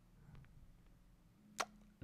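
Near silence, room tone only, broken by one short, sharp click near the end.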